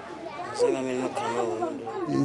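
Children's voices talking, high-pitched and starting about half a second in.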